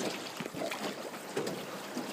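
Water trickling and lapping around a small rowing boat as a long oar, worked with the feet, strokes through the river, with faint small splashes.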